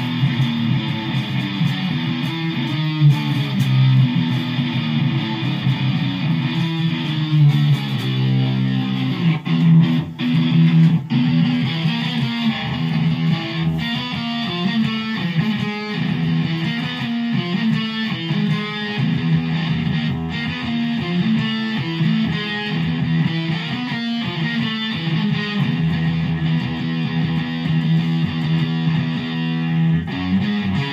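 Amplified electric guitar played continuously, a run of riffs with strong low notes and a brief break about ten seconds in.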